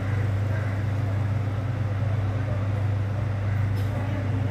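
An engine running steadily at a low, even hum, with a brief click near the end.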